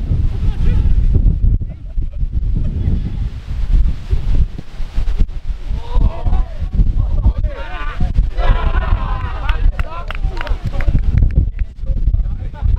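Wind buffeting the microphone with a heavy low rumble throughout. Players shout from the pitch from about six seconds in as a goal goes in.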